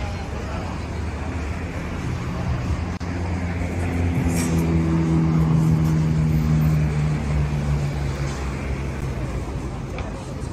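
Street traffic with a motor vehicle's engine running close by: a steady low hum that builds about two seconds in, is loudest in the middle and fades out near the end.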